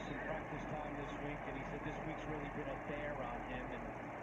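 Faint speech from a football game broadcast playing quietly under the reaction.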